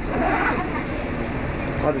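Steady low rumble of a double-decker bus's engine and running gear heard from inside the bus, with a brief murmur of voices.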